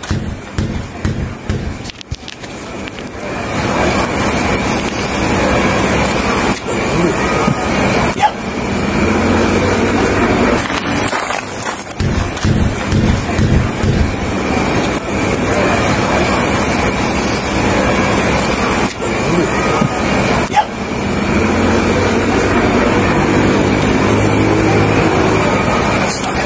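Steady outdoor noise with indistinct voices, growing louder about three seconds in and holding there.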